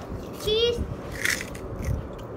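A small child's brief high-pitched voice about half a second in, then short crisp crunches of kerupuk crackers being bitten and chewed.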